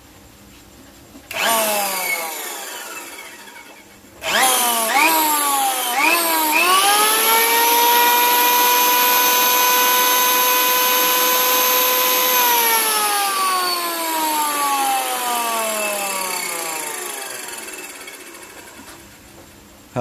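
Heavy 100 V Japanese electric hand planer with a 136 mm-wide blade drum, rated at about 1200 W, test-run with no load. It is switched on briefly about a second in and coasts down, then switched on again around four seconds with a couple of quick trigger blips. It runs up to a steady high whine at full speed, is switched off about twelve seconds in, and whines down over several seconds.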